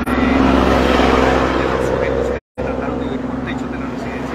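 A road vehicle passing close by, its engine and tyre noise loudest in the first two seconds and then easing off. The audio cuts out completely for a moment about two and a half seconds in.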